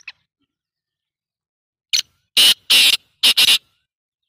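Black francolin calling: a quick series of about five harsh, grating notes starting about two seconds in, after a faint click at the very start.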